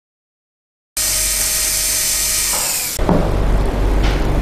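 Contra-angle dental handpiece starting suddenly about a second in with a high whine. About two seconds later it changes to a louder, lower grinding as the bur cuts into a typodont molar to open the pulp chamber for a pulpotomy.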